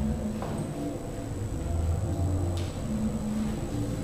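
Dance shoes and high heels stepping and pivoting on a hardwood floor, with two sharp clicks, over faint low held tones in the background.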